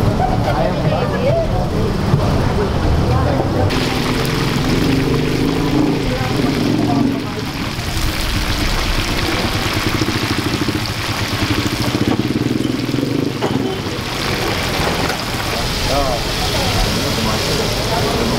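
Chicken pieces deep-frying in a wide wok of bubbling oil, a steady sizzling hiss that comes in about four seconds in, under the voices of a crowd.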